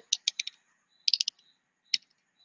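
Light clicking: a quick run of clicks, a second run about a second in, and a single click near the end.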